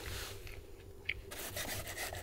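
Table knife sawing through a thick grilled steak against a wooden cutting board: a rasping scrape in quick repeated strokes, starting a little past halfway, after softer mouth-chewing sounds.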